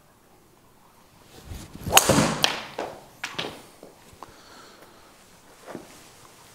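A golf swing with a Cobra DarkSpeed driver: a rising whoosh on the downswing, then the sharp crack of the clubhead striking the ball about two seconds in. A second smack follows half a second later as the ball hits the simulator screen, then a few lighter knocks.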